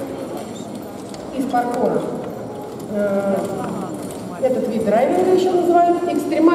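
Hoofbeats of a carriage-driving horse trotting past on the arena's sand, with people's voices talking over them.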